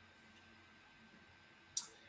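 Near silence: a pause between speech, with faint room tone and a brief high hiss near the end.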